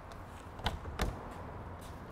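Two light clicks as a quick-release latch on a landspeed car's cockpit body panel is worked, about two-thirds of a second and a second in.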